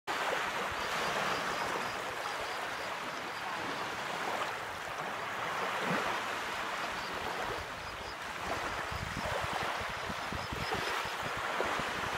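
Small waves lapping and washing onto a sandy beach: a steady surf hiss that swells and eases gently.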